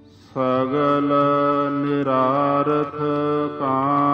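Sikh shabad kirtan in Raag Todi: a singer's voice with harmonium comes in about a third of a second in after a brief hush, holding long notes over a steady drone. There is a short break and a glide in pitch about three and a half seconds in.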